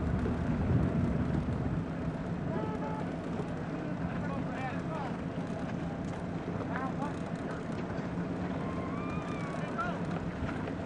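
A motor running steadily with a low drone, likely a motorboat's, with faint distant voices rising and falling over it from a few seconds in.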